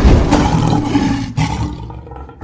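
Lion roar sound effect, loud and rough, fading away toward the end.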